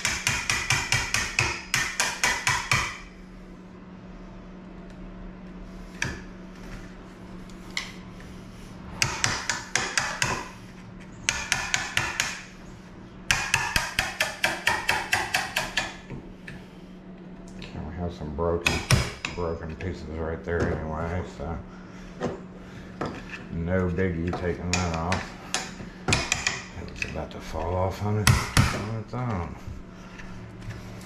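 Hammer driving a wood chisel into the edge of a wooden door, in quick runs of sharp taps, about four a second, to chisel out a recess for a lock's wrap plate. From about halfway on, the taps give way to slower, uneven knocks and scraping.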